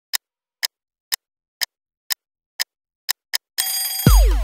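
Clock ticking effect opening a pop song: seven even ticks about two a second, then one quicker tick. A sustained alarm-like ring starts near the end.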